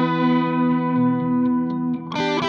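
Electric guitar (an LTD SN-1000W) played through a Blackstar ID:Core Stereo 150 combo amp: one chord held and left to ring out, its brightness slowly fading, with a few faint clicks near the end.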